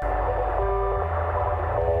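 Rock band music that comes in suddenly, with a heavy low bass line and drums under pitched guitar or keyboard notes that change every second or so.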